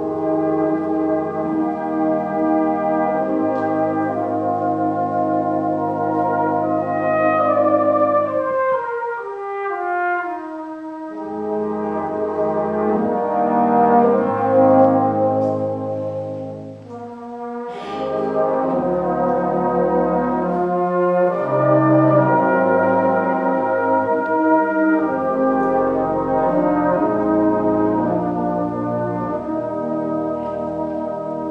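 Brass band playing a slow, sustained hymn in full held chords. About nine seconds in the harmony thins to a falling line, and after a brief lull around the middle a short struck sound comes in as the full band returns with deep bass notes.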